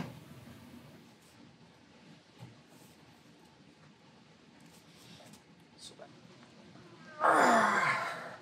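Faint metal handling and a few small ticks as an oil pickup tube is screwed into a new oil pump by hand, then near the end a loud, falling sigh of effort from the man working it.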